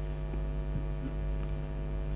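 Steady electrical mains hum, a dense stack of evenly spaced tones, with a few faint ticks.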